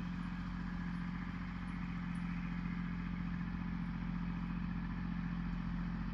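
Kubota L2501 tractor's three-cylinder diesel engine running steadily at an even pitch as it drags dirt along a gravel driveway.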